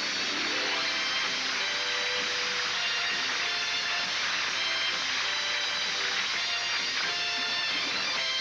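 Instrumental music playing steadily, with held and changing notes over a dense, bright wash.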